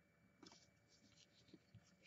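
Near silence, with a few very faint soft ticks of trading cards being handled: once about half a second in, and twice near the end.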